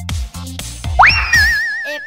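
Upbeat children's background music with a cartoon sound effect about a second in: a quick upward-sliding whistle, then a wavering, wobbling held tone.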